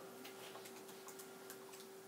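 Faint, irregular light clicks over a steady low hum.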